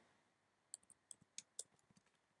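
Faint computer keyboard keystrokes: a quick run of about half a dozen light clicks, starting a little before a second in, as text is typed.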